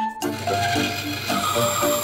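Background music with a melody of separate notes, over a steady mechanical noise that starts about a quarter second in: a benchtop band saw running as plywood is fed to its blade.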